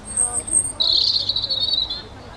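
A small songbird singing: a thin, high note, then a louder buzzy trill about a second long at a lower pitch.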